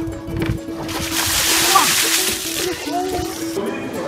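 A bucket of ice water dumped over a seated person, a splash lasting about a second and a half, starting about a second in. Background music plays underneath.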